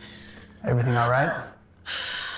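A startled person's voice: a short cry with a swooping pitch about half-way through, then a sharp, breathy intake of breath near the end, a gasp of fright.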